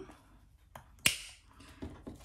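A sharp click about a second in, with a fainter tick before it and another near the end, from hands handling clear plastic envelopes in a ring binder.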